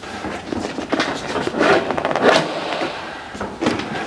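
Banner poles being fitted into the brackets of a truck-mounted sign frame: several sharp knocks and clunks over a rustling scrape.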